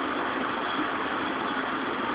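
Steady background noise of street traffic with a faint low hum, no single event standing out.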